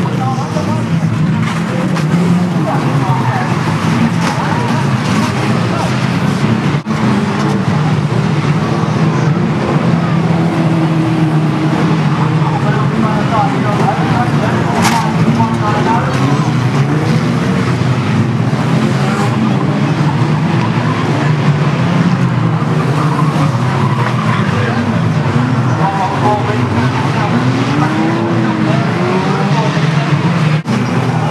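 A pack of banger racing cars running hard on a shale oval, engines revving and rising and falling in pitch, with tyres skidding and sliding. One sharp crack stands out about halfway through.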